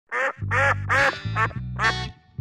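Five loud, nasal duck quacks in quick succession over a bass line, opening the show's theme music.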